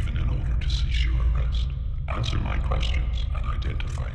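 An alien creature's guttural grunts and rasping breaths in two stretches, with a short break just before the midpoint, over a deep, steady low rumble.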